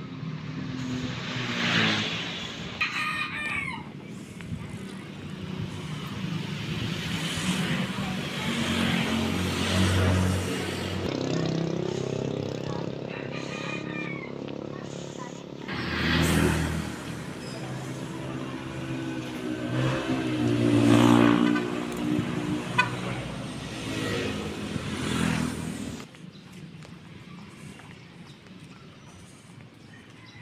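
Street traffic of small motor vehicles passing, including a motorcycle tricycle's engine, with louder passes about sixteen seconds in and again around twenty-one seconds; the sound falls away sharply a few seconds before the end.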